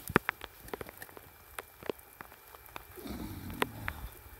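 Scattered sharp metal clicks and clinks as a trap setter is worked against the steel springs and jaws of a body-grip trap to open it. A soft, low rustle comes about three seconds in.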